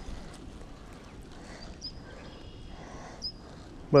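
Quiet outdoor background: a low wind rumble on the microphone, with a few faint thin high whistles about halfway through.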